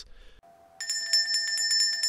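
A hand-held metal handbell rung rapidly, starting about a second in: its clapper strikes about eight to ten times a second over a steady ringing tone.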